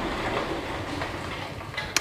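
A steady, even rushing noise.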